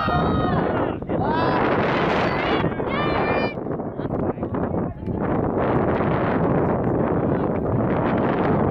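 Several people shouting and calling out in short, drawn-out yells during the first few seconds, then wind buffeting the microphone.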